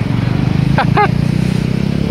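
A motorcycle engine running with a steady low throb, and a brief voice calling out about a second in.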